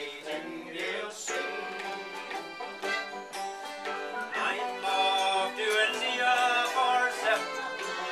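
Acoustic guitar strumming and a mandolin picking an instrumental break in a traditional folk song.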